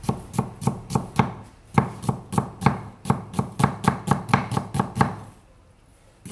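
Kitchen knife slicing an onion on a thick round wooden chopping board, the blade knocking against the wood in an even rhythm of about four strokes a second. The chopping stops about five seconds in.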